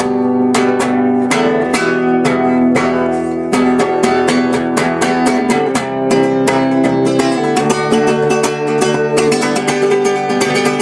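Music: a guitar, most likely acoustic, strummed and picked in a quick, steady rhythm of several strokes a second over held chords.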